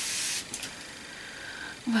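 Aerosol can of Avène thermal spring water spraying onto the face: a steady hiss that cuts off about half a second in, followed by a short spurt or two.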